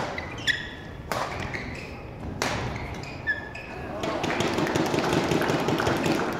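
Badminton rally: rackets striking the shuttlecock, four sharp hits in the first two and a half seconds, with short shoe squeaks on the court floor in between. From about four seconds in, the hitting stops and voices rise louder.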